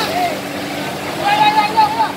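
Raised voices calling out over the steady hum of a fire truck's engine running, with one loud voice held for about half a second near the end.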